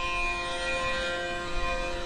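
Soft instrumental background music, a drone of several steady held tones in an Indian classical style.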